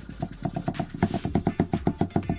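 Chef's knife rapidly chopping fresh dill on a wooden chopping board, a fast, even run of knocks that quickens to about eight to ten cuts a second.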